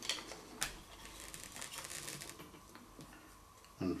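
Light clicks and taps of a disassembled electric shaver's plastic housing and parts being handled, with one sharper click about half a second in and faint rustling between.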